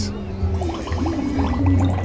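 Water bubbling and gurgling around a half-submerged wolf figure in a pond, with low gusty buffeting from wind on the microphone.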